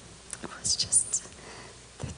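A woman speaking breathily, almost in a whisper, into a handheld microphone: a few short hissy bursts between about half a second and just over a second in.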